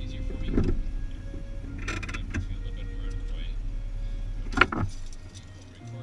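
Car engine idling with a steady low hum heard inside the cabin. A sharp click comes just before the hum dies away about five seconds in, as when the ignition key is turned and the engine is switched off.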